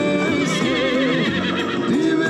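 Film soundtrack with music playing and a horse whinnying over it, one wavering call from about half a second in to just past a second.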